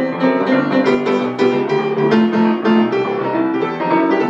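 Grand piano played solo: a busy jazz-swing piece, with quick notes moving in both hands without a break.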